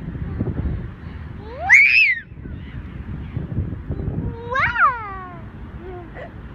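A toddler squealing on a swing: two high squeals that rise and fall in pitch, about three seconds apart, each at the same point of the swing.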